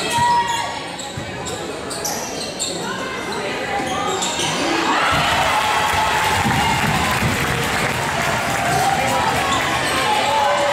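A basketball bouncing on a hardwood gym floor during play, over voices from the crowd and benches in a large hall. The voices swell into a louder, steadier wash about five seconds in.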